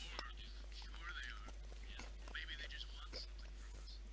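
Faint, low-level speech that sounds close to a whisper, over a voice call, with a steady low hum underneath.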